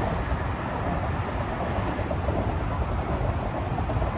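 Traffic on an elevated highway: a steady rush of passing vehicles with a heavy low rumble.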